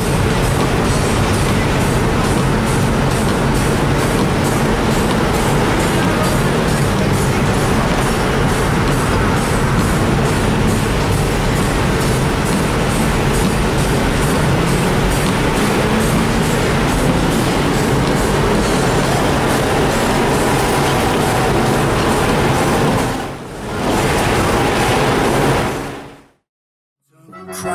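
Race car engine working hard at high revs, heard from inside the cabin along with tyre and road noise on ice, its pitch rising and falling with throttle and gear changes. The sound dips briefly near the end.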